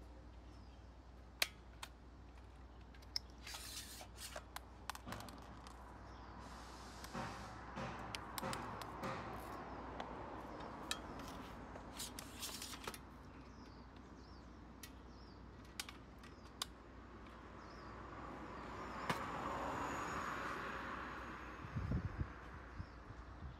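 Scattered sharp clicks and clacks of a folding electric bicycle's frame battery being handled: lock, latch and plastic casing knocking as the battery is unlocked and drawn up out of the frame. A swell of rustling, sliding noise comes near the end.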